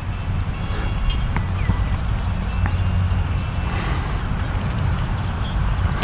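Steady low outdoor rumble, with a brief cluster of short, high electronic beeps about a second and a half in.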